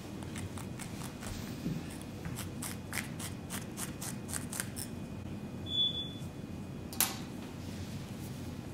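A razor blade scraping and picking at the cut neckline of a cotton hoodie to fray the edge, in a quick run of short scratchy strokes of about three or four a second. A brief high tone comes near the end of the scraping, and a sharp click follows about a second later.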